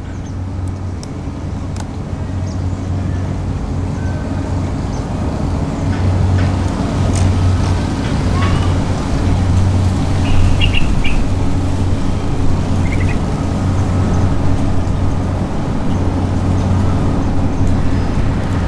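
Steady low mechanical hum and rumble, growing louder over the first several seconds, with a few light clicks.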